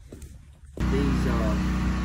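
Faint handling sounds, then a sudden jump about three-quarters of a second in to a loud, steady, low machine hum, with a voice briefly heard over it.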